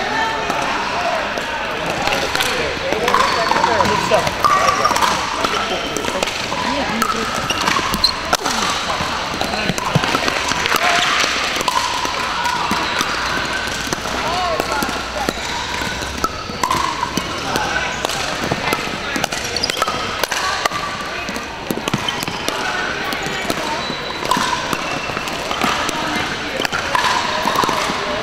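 Pickleball paddles striking the hard plastic ball in rallies on several courts, short sharp pocks scattered throughout a large gym, over indistinct chatter from players.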